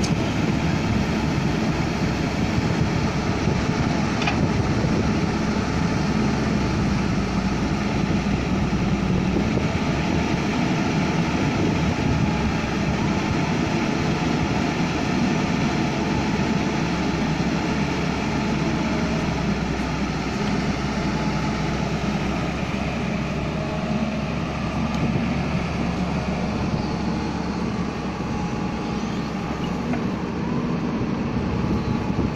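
Diesel engine of a JCB tracked excavator running steadily.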